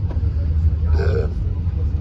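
Steady low engine rumble heard inside the rally vehicle's cabin, with a brief murmur of voice about a second in.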